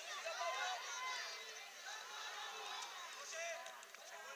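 Several high-pitched voices shouting and calling over one another across an outdoor football pitch: children playing a match, with spectators. A few faint sharp knocks sound near the end.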